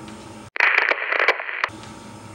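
A burst of crackling, radio-like static lasting about a second. It starts and cuts off abruptly and sounds thin, as if heard through a small speaker. It is an edit effect marking the cut between shots.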